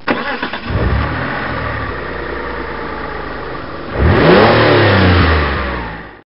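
A car engine running, then revving louder about four seconds in, the pitch rising and falling.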